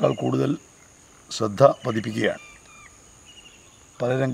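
A man speaking in two short phrases, with a pause after them. Under it runs a steady high-pitched whine, and a few short, faint chirps come in the pause.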